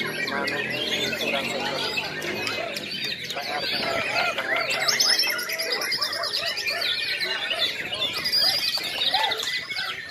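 Many caged white-rumped shamas (murai batu) singing at once in a singing contest, a dense, unbroken tangle of overlapping whistles, trills and chirps.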